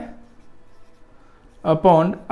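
Felt-tip marker writing on a whiteboard: faint strokes during a pause in the speech, with the man's voice starting again near the end.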